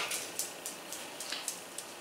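Soft rustling of a plush fabric lap blanket being handled and turned over, with a few faint ticks scattered through it.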